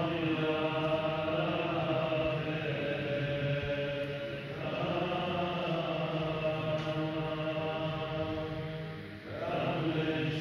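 Liturgical chanting of the Assyrian Church of the East service: voices chant in long held phrases, with a brief break about halfway through and another near the end.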